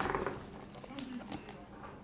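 Hands picking up a shrink-wrapped trading card box, with a few small clicks and taps of cardboard and plastic being handled.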